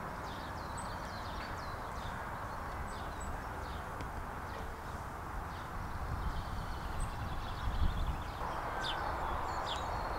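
Outdoor ambience: a steady background hiss with small birds chirping here and there, and a few low rumbles a little past the middle.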